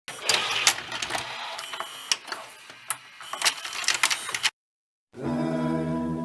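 A run of sharp mechanical clicks and clattering from a device's mechanism, uneven and busy, that cuts off suddenly about four and a half seconds in. After half a second of silence, intro music begins with held chords.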